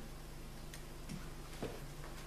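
Quiet lecture-room tone: a steady low hum with about three faint, short clicks.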